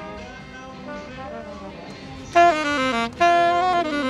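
A saxophone plays loud, clear notes starting about two seconds in: a short phrase, a brief break, then a held note that begins stepping downward near the end. Before it, only faint music is heard.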